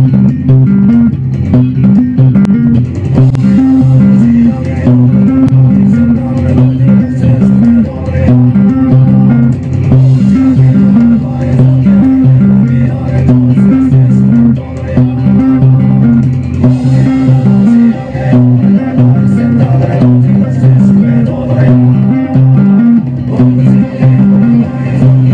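Electric bass played fingerstyle in a fast, busy metal riff: a repeating pattern of low notes, with drums in the mix of the backing song.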